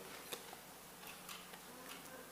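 Near silence: quiet room tone with a faint steady hum and a few small ticks, one about a third of a second in.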